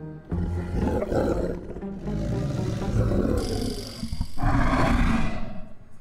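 A walrus roaring loudly: one long, growling roar of about four seconds, then after a brief break a second, harsher roar that cuts off just before the end.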